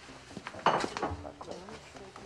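Dishes and cutlery clattering, with a few light clinks and a louder clatter a little over half a second in.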